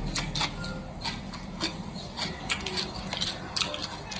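Crunching of a very crispy shredded potato snack (kentang mustofa) being chewed, heard as an irregular run of sharp little crackles.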